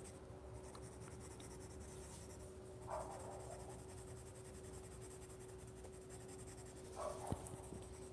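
Faint scratching of a coloured pencil shading on paper, over a faint steady hum. Two brief soft sounds come about three and seven seconds in.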